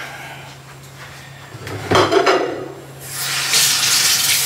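A short knock and clatter of kitchenware about two seconds in, then a kitchen tap is turned on and water runs in a steady hiss from about three seconds in.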